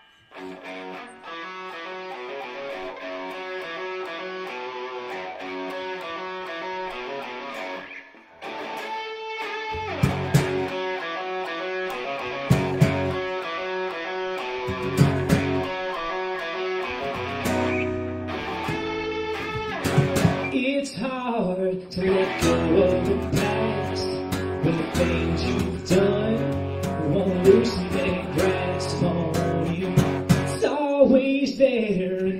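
A small band playing the instrumental intro of a rock-leaning song: one guitar plays alone at first, and after a short break about eight seconds in, heavier low notes and sharp drum-like hits join, building to the full band from about twenty seconds in.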